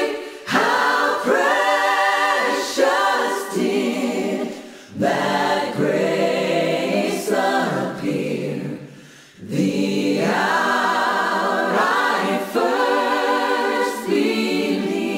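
Unaccompanied choir singing in sustained phrases, with short pauses between phrases about five and nine seconds in.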